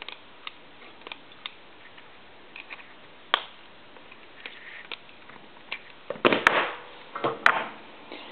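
Small clicks and knocks from a disassembled telephone and its cords being handled on a workbench. There is a sharp click about three seconds in, and a burst of louder clicking and clattering between six and seven and a half seconds.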